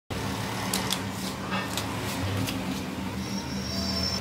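A steady low machine-like hum in the background, with a few faint clicks scattered over it.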